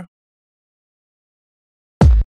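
Near silence: digital silence in a screen recording, broken only by the tail of a spoken word at the very start.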